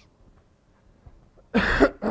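Quiet room, then a man coughs once, loudly, about one and a half seconds in.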